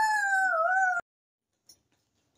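A boy's voice making one long, high-pitched howl that falls slightly in pitch and cuts off suddenly about a second in.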